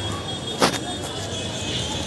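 A motorcycle passing close by on a busy street, with music playing in the background. There is a brief, loud burst of noise about half a second in.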